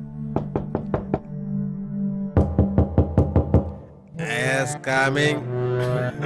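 Knuckles rapping on a door: a quick run of about five knocks, then a louder run of about seven, over background music with sustained low notes.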